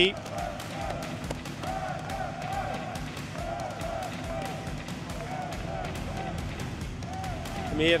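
Arena hall ambience: distant voices echoing through the hall, with many scattered sharp taps.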